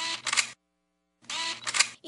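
Camera shutter clicking in two short bursts about a second apart, each made of a few rapid clicks.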